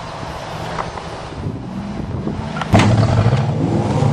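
A battered demolition-derby car's engine running, then a sharp knock about two-thirds of the way in, after which the engine gets clearly louder as the car accelerates toward the camera.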